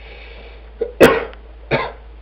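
A man coughing: one sharp, loud cough about a second in, followed by a second, shorter one.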